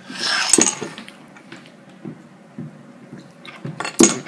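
Glass soda bottle being handled, clinking: a burst of clinks and rubbing at the start, a few faint ticks in the middle, and a sharp clink at the very end.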